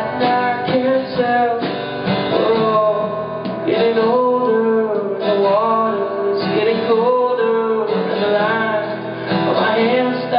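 Alt-country band playing live: strummed acoustic guitar with electric guitar, bass, drums and fiddle.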